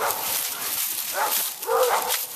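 A dog making a couple of short vocal sounds, over a steady rustling hiss of dry leaves.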